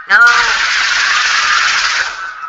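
A shouted 'No!', then a loud, steady burst of noise lasting almost two seconds that cuts off suddenly: a staged sound effect of automatic gunfire in a mock emergency call.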